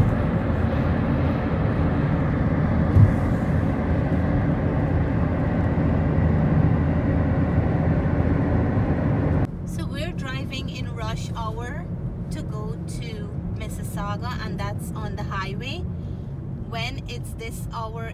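Road and engine noise inside a car driving on a highway, a steady rushing hum with a brief click about three seconds in. About halfway through, the sound drops abruptly to a quieter low hum with faint voices over it.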